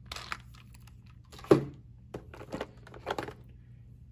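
A few sharp plastic clicks and knocks of a windshield suction-cup mount being handled and adjusted, with light handling rustle in between.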